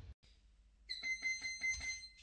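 A digital gym interval timer sounds one long, high electronic beep of about a second, signalling the start of a one-minute round. Before it, an intro sound fades out and there is a short moment of near silence.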